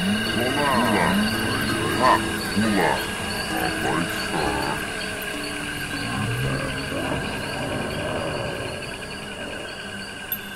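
Live-coded experimental electronic music: held high synthesized tones and a fast pulsing pattern, with sliding, warbling pitched sounds that bend up and down, busiest in the first half.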